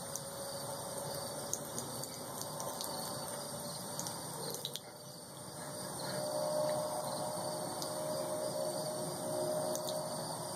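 Faint outdoor background of steady insect chirring with a low trickle of water from a garden hose running onto concrete. A faint steady tone comes in about six seconds in.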